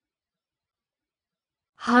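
Dead silence, then near the end a voice begins saying the word "hobgoblins".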